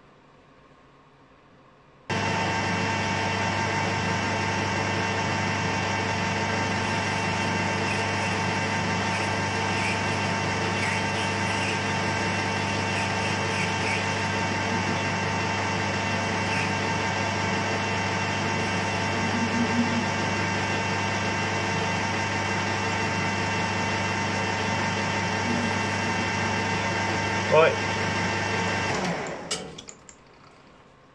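Small metal lathe starting up about two seconds in and running steadily with a hum and whine while a cutter chamfers the corner of a small brass part, then winding down just before the end. There is one brief louder sound near the end.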